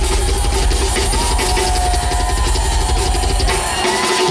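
Live rock drum solo on a full drum kit: a fast, steady run of bass drum hits under constant cymbal wash.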